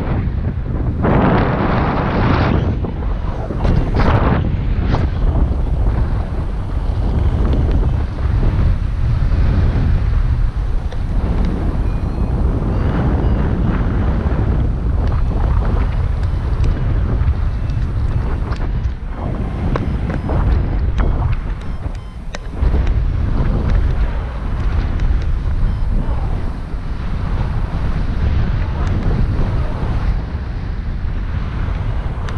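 Airflow buffeting a paraglider pilot's camera microphone in flight: a loud, low rumble that swells and eases in gusts.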